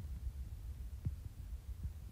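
Low steady room hum with two faint soft ticks, about a second in and again near the end.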